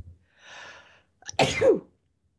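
A person sneezing: a breathy intake of breath, then a single loud sneeze about a second and a half in, its voice falling in pitch.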